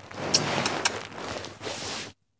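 Rustling and handling noise close to the microphone, with a few sharp clicks in the first second.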